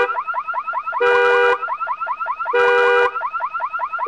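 Car alarm sounding: a harsh held blast of about half a second alternates with a run of quick rising chirps, about six a second, the cycle repeating every second and a half.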